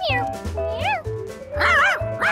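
Cartoon cat meowing a few times, short rising-and-falling calls, over background music with a pulsing bass line.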